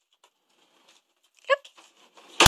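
Mostly quiet, with a faint sliding rustle as a dresser drawer is pulled open, then the one-word command "lukk" spoken near the end.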